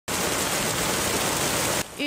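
Heavy downpour of rain falling onto floodwater, a steady, dense hiss that cuts off abruptly near the end.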